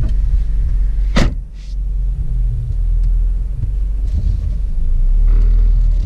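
Steady low rumble of a car idling, heard from inside the cabin, with a single sharp thump about a second in as a car door is shut.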